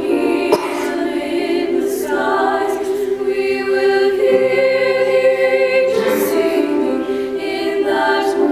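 A choir singing sustained chords that change every second or two.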